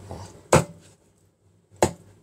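Chinese cleaver chopping through a cooked whole chicken, bone and all, onto a plastic cutting board: two sharp chops about a second and a quarter apart.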